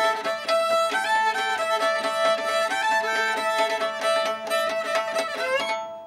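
Fiddle playing an old-time tune with a steady drone string, while a second player beats fiddlesticks (a pair of thin sticks) on the strings for a clicking, percussive rhythm. The tune ends just before the close.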